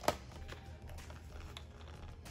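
Printable vinyl sheet handled on a sticky Cricut cutting mat. There is a sharp click just after the start, then faint light ticks and rustling as a corner of the sheet is peeled back to check that the cut went through.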